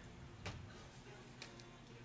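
Quiet room with a low hum and two faint ticks about a second apart.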